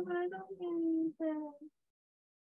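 A person's voice in drawn-out, sing-song held notes, heard over a video call. It cuts off suddenly a little under two seconds in.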